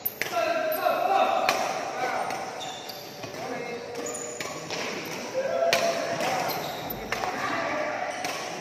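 Badminton rackets striking a shuttlecock in rallies, a sharp hit every second or so, echoing in a large hall, with squeaks of court shoes between the hits.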